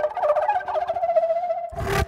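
Flute and flugelhorn playing together: two steady held notes under a quick, wavering run of notes. A short burst of rushing, noisy sound cuts across near the end.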